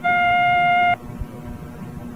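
A single steady electronic beep tone on an AM radio broadcast, lasting about a second and cutting off sharply, followed by faint steady hum and hiss from the recording.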